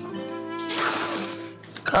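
Soft background drama score with sustained held notes. About a second in, a woman lets out a loud breathy exhale over it.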